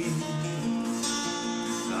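Acoustic guitar playing a folk accompaniment between sung lines: picked chords ringing, with a fresh strum about a second in.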